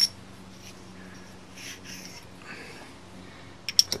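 Quiet handling of the metal parts of a harmonic balancer installer tool over a steady faint hum, with soft rustling in the middle. A few light sharp metal clicks come near the end as the threaded rod and nut are handled together.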